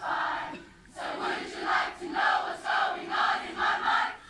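A large school crowd shouting a war cry (kreet) in unison: one held shout, a short lull, then a run of short rhythmic chanted shouts at about two to three a second.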